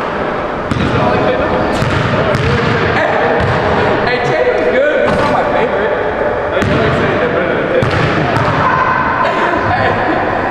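A basketball thudding on a hardwood gym floor, repeated sharp bounces about a second or so apart that echo in the hall. Indistinct voices run underneath.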